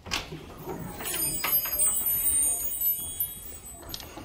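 Light, high-pitched metallic jingling with a few sharp clicks, from about one to three seconds in, over faint voices.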